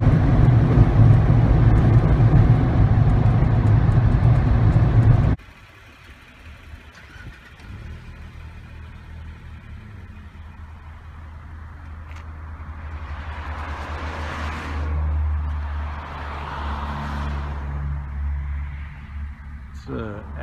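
Jeep Wrangler JK Rubicon driving at highway speed on pavement, loud road and engine noise inside the cab, cutting off suddenly after about five seconds. A much quieter low, steady engine hum follows, with a swell of rushing noise about two thirds of the way through.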